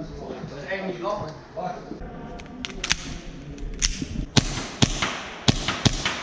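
Murmured voices for about two seconds, then an irregular string of sharp cracks from airsoft guns being fired, about a dozen shots spread over the last few seconds.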